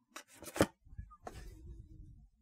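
Oracle cards being handled: a few crisp flicks and rustles, the loudest a little over half a second in, as a card is drawn from the deck and laid down on the cloth.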